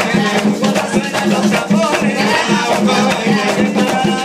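Live Puerto Rican bomba: barrel drums (barriles) beating a steady, driving rhythm, with a maraca shaking and a man singing over them.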